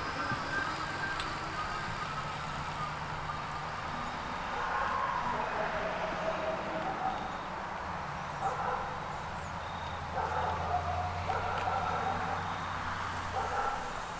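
A Lectric XP e-bike running under pedal assist on level 5, its geared rear hub motor giving a faint whine that drifts in pitch as the speed changes, over a low steady hum that grows in the second half, with a few short louder sounds in the later part.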